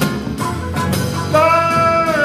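Live band music: acoustic guitar and drum kit playing a song between sung lines. About halfway through, a long, steady high melodic note comes in and is held.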